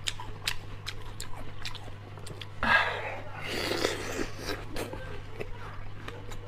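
Watermelon being chewed close to a lapel microphone: wet, crunchy chewing with many small smacking clicks. Two louder, breathier mouth sounds come in the middle.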